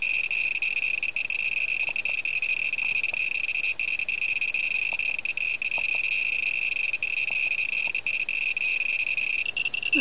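Gamma Scout Geiger counter's clicker buzzing as a steady high-pitched tone, its clicks run together by the high count rate from a caesium-137 source reading about 50 microsieverts per hour. The tone shifts slightly near the end.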